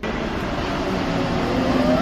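Mexico City Metro Line 1 train arriving at the platform: a loud, even rush of running noise, with a rising whine and a steady hum building near the end.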